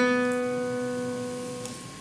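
A single note on a classical guitar's open second string, plucked once with the index finger in a free stroke and left to ring, fading away.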